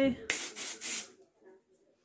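Charlie Red aerosol perfume spray being sprayed: one short, hissing spray lasting under a second, starting about a quarter second in.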